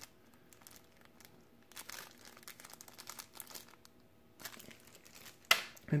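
Faint crinkling of a small plastic zip bag of wooden counters as it is handled, with scattered light clicks and a sharper tap near the end.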